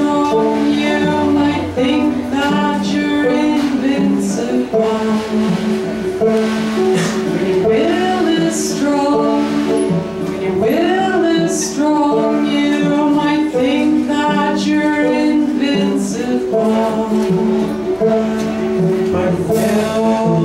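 Live band playing a song, with a man singing over a strummed banjo and other instruments.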